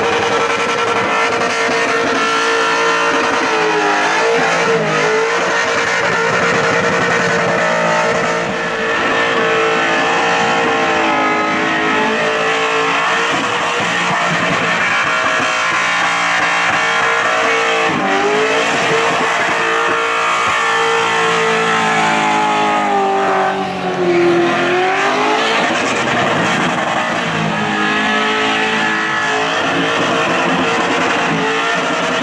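Supercharged Holden VL Commodore wagon's engine held at high revs through a burnout, with the rear tyres spinning and squealing. The revs stay steady for long stretches, dropping and climbing back a few times, around 4, 18 and 24 seconds in.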